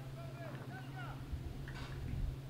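Faint distant voices of players calling out on the pitch, short rising and falling calls, over a steady low hum.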